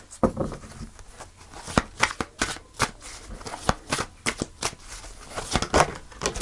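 A deck of tarot cards being shuffled by hand: a string of irregular, crisp card clicks and flicks.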